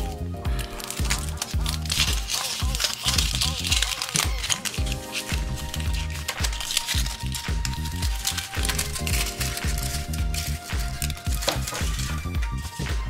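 Background music with a steady beat, over the crinkling of a Kinder Surprise egg's foil wrapper being peeled off by hand.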